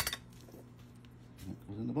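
A single sharp knock of a knife against a plastic cutting board right at the start, then a faint steady hum.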